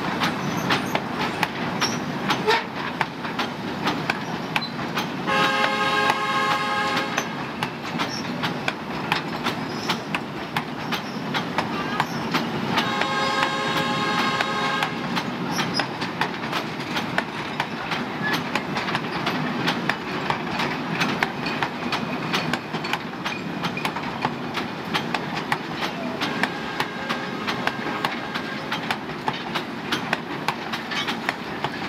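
Steel hopper wagons of a narrow-gauge coal train rolling past close by, their wheels clicking over the rail joints in a steady clatter. The locomotive sounds two long blasts, about five seconds in and again about thirteen seconds in, each lasting about two seconds.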